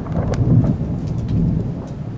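Thunder rumbling low and continuously with rain, easing off near the end.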